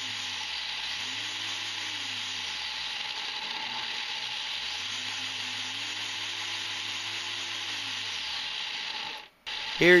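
3D-printed supercharger with a planetary gearbox, belt-driven by a motor at high speed and making pressure: a steady high whir with an airy hiss, under which a low hum swells and fades a few times. It cuts off abruptly near the end.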